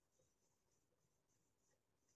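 Near silence, with faint repeated swishes, about three a second, of a duster wiping a whiteboard clean.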